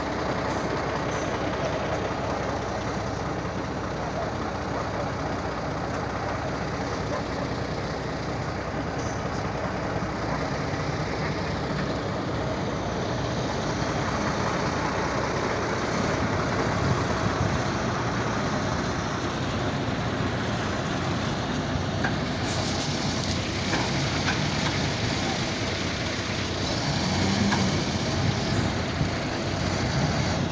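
Diesel engine of a heavy dump truck loaded with rubbish, running steadily while the truck is bogged down in soft soil and refuse. The engine gets somewhat louder from about halfway through.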